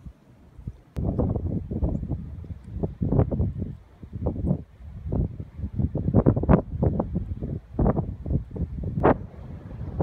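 Wind buffeting the microphone in irregular gusts, starting suddenly about a second in.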